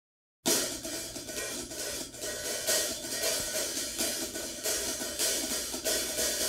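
Jazz drum kit playing softly on cymbals and hi-hat with light drum strokes, starting about half a second in.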